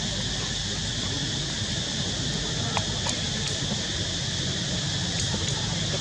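Steady outdoor background noise: a hiss with a low hum under it, faint distant voices, and a few small clicks around the middle.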